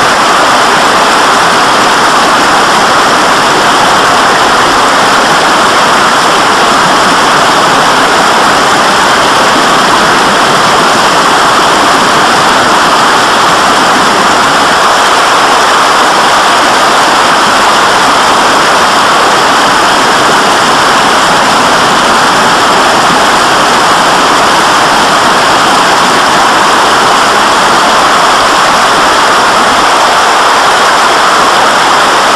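Rushing mountain water: a loud, even noise that holds steady without change.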